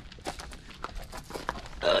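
Footsteps on dry leaf litter and twigs: a run of irregular, light crunches and clicks. A short exclamation starts right at the end.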